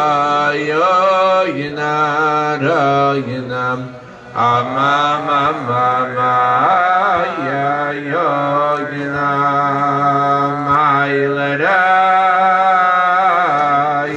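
Male singing of a slow, wordless Chassidic niggun, with long held notes that slide from one pitch to the next and a short break about four seconds in.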